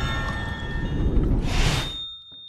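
Sound effects of a TV sponsor spot: a dense rumbling wash of noise that swells into a whoosh about one and a half seconds in, then cuts away.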